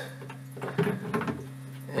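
A steady low electrical hum under a few faint clicks and knocks of plastic parts being handled as a PVC bulkhead nut is set into place.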